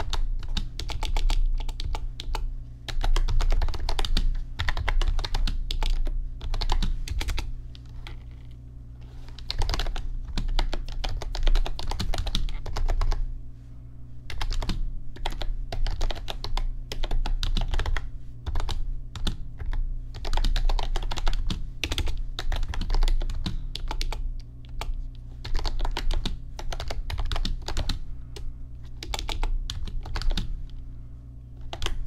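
Continuous typing on a backlit computer keyboard: a dense stream of key clicks and key-bottoming taps, with short lulls about eight and thirteen seconds in. A steady low hum runs underneath.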